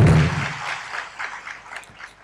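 Faint scattered applause from an audience in a hall, dying away over two seconds after the preacher's amplified voice breaks off.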